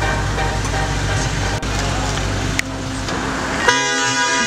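Electronic dance music gives way about one and a half seconds in to car and street traffic noise. Near the end a loud, steady tone with many overtones sets in suddenly.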